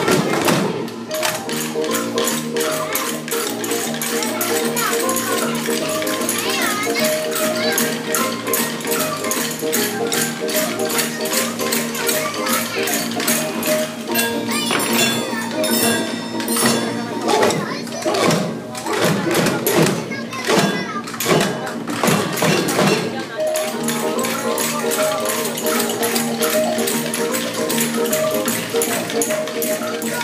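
Children's percussion band striking small hand drums and shaken or tapped hand percussion in time with a steady backing tune. About halfway through the tune drops out for several seconds, leaving mostly the percussion strikes and voices, then it comes back.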